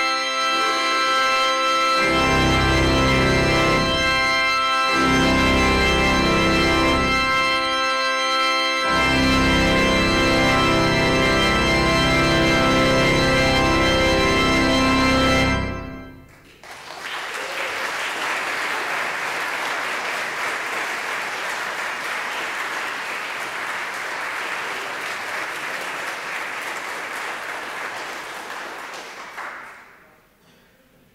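Church organ playing loud, sustained full chords over deep pedal notes. The bass drops out briefly a few times, and the final chord is cut off about sixteen seconds in and rings on briefly in the room. An audience then applauds steadily, dying away near the end.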